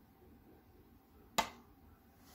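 A single sharp click about one and a half seconds in, made while the cardboard eyeshadow palette is being handled and moved.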